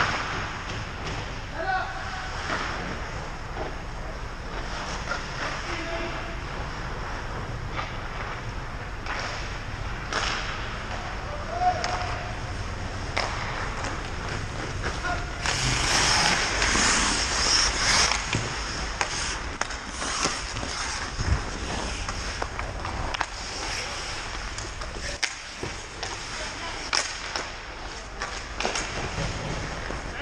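Ice hockey in play on a rink: skate blades scraping the ice, many short sharp clacks of sticks and puck, and faint shouts from players. The scraping grows louder for a couple of seconds a little past the middle.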